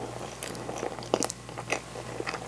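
Chewing a mouthful of natto and rice: a run of short, wet mouth clicks, loudest a little past the middle.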